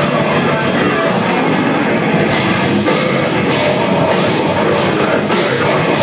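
A metal band playing live, loud and dense, with distorted electric guitars and a pounding drum kit, heard from within the audience.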